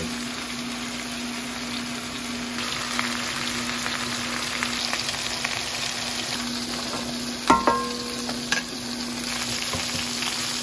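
Chicken pieces sizzling steadily as they fry in oil in a nonstick wok, with a steady low hum underneath. A sharp knock with a brief ring comes about seven and a half seconds in.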